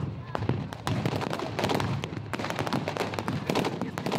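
Staged battle gunfire: a rapid, dense run of blank shots and bangs over a steady low rumble of a tank engine.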